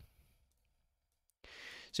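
Near silence, then a breath drawn in through the mouth close to the microphone for about half a second near the end, just before speech resumes.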